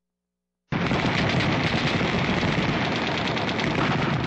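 Sound effect of rapid machine-gun fire, a dense continuous rattle that starts abruptly under a second in after a moment of silence.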